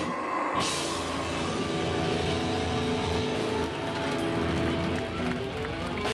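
Deathcore band playing live and loud: heavily distorted guitars holding sustained notes over bass and drums.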